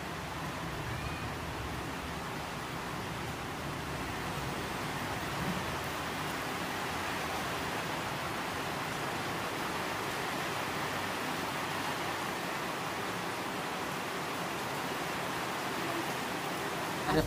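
A steady, even hiss of background noise, unchanging throughout.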